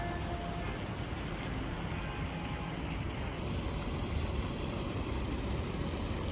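Steady open-air rumble heaviest in the low end, like wind and distant city traffic. About halfway through, a brighter hiss of moving pool water joins in.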